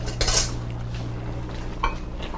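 A metal utensil scrapes in a stainless steel pan about a quarter second in, then strikes with a short, ringing metallic clink near the end, over a steady low hum.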